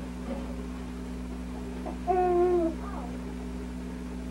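A voice makes one short held 'ooh' about two seconds in, dipping at its end, then a softer brief sound follows. A steady low hum runs underneath.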